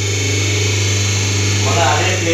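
Steady low electric hum of a semi-hydraulic paper plate machine's motor running, with a brief indistinct voice near the end.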